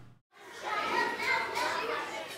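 Many people talking at once in a large room, a lively hubbub of overlapping voices that starts suddenly after a brief silent gap.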